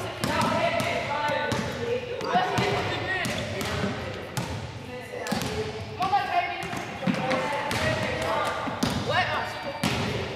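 Basketballs bouncing on a hardwood gym floor, many sharp bounces at irregular intervals, with young voices chattering in a large gym hall.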